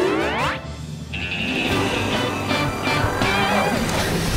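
Cartoon background music, opened by a springy cartoon sound effect that rises steeply in pitch and ends about half a second in.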